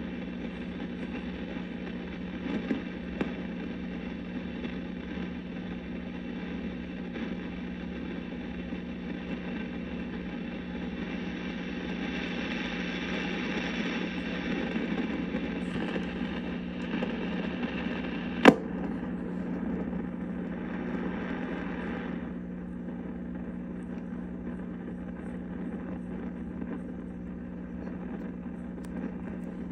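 1937 Zenith 6D219 tube radio's speaker putting out static hiss over a steady low hum as the dial is tuned between stations. A single sharp pop comes about two-thirds of the way through, and the hiss turns duller a few seconds later.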